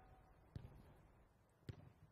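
Near silence broken by two faint thuds about a second apart: a football being kicked in short passes.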